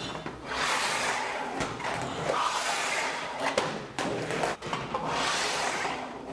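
Steel scribe drawn along the edge of a sheet-metal blank, scratching a marking line one inch in: a long rasping scrape with a few light clicks, broken briefly near the end.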